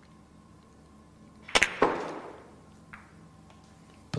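Russian pyramid billiards shot: a sharp click as the cue tip strikes the cue ball, then a quarter second later a loud clack of ball on ball, followed by a fading rumble. A faint knock follows about a second later.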